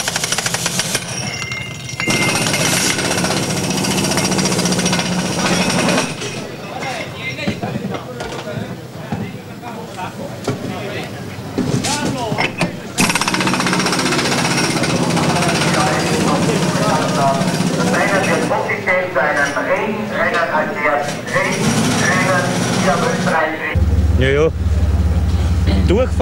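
Pneumatic wheel guns rattling in two long bursts as Formula 1 crews take off and refit wheels for a change to rain tyres, with voices around them.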